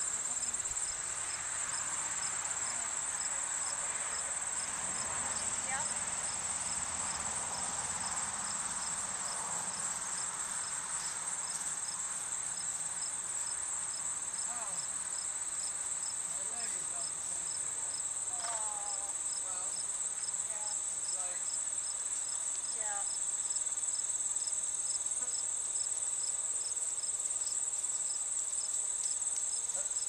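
Steady, high-pitched insect trilling, with a fainter insect call pulsing at an even beat underneath.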